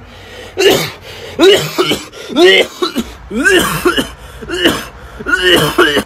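A young man coughing over and over, about six voiced coughs roughly a second apart.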